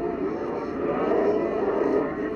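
A speech recording played backwards at reduced speed, heard as a garbled, unintelligible run of voice sounds.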